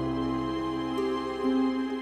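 Background drama score of long held notes, moving to new notes about a second in.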